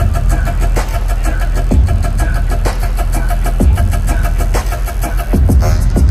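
Loud electronic bass music from a festival sound system, recorded on a phone: a heavy, engine-like low bass line with a deep kick hitting about once a second.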